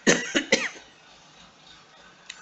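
A person coughing: three quick bursts in the first second, then quiet room tone.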